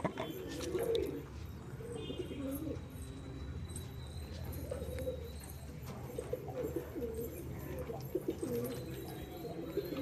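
Domestic pigeons cooing, low warbling calls following one another.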